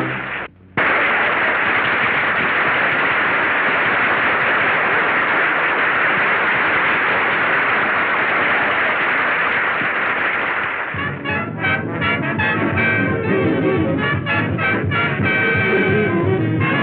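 A dense, steady rush of noise runs for about ten seconds after a momentary dropout. Then a swing big band with brass strikes up in rhythm about eleven seconds in. The sound is dull and narrow, as on an old film soundtrack.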